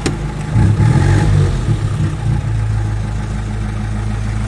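The Peugeot 201's 1122 cc four-cylinder side-valve engine is running, heard from inside the cabin shortly after starting on its manual choke. It speeds up briefly about half a second in, then settles back to a steady idle.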